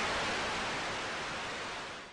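Television-static hiss sound effect: a steady, even hiss that starts abruptly and slowly fades away.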